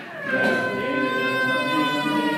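Background devotional song: a voice holds one long sung note that sinks slowly in pitch.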